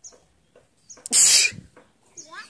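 A person sneezing once, loud and sharp, about a second in.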